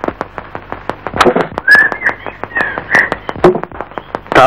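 A rapid run of sharp clicks, with a few short whistle-like chirps in the middle.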